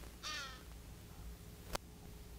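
A single short bird call, falling slightly in pitch at its end, over a faint outdoor background. A sharp click follows near the end.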